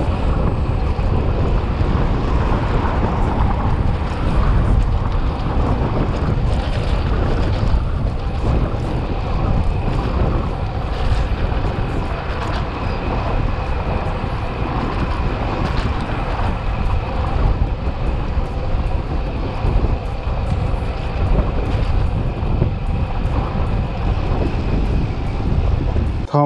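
Steady rush of wind buffeting the microphone of a camera on a moving road bike, mixed with road noise from riding on asphalt.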